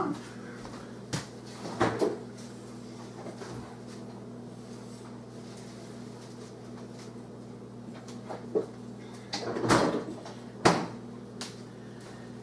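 Kitchen cupboard doors and things being handled give a handful of short knocks and clatters over a steady low electrical hum, with the loudest knocks about ten seconds in.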